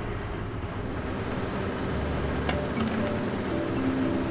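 Background music with sustained notes over a steady rushing noise.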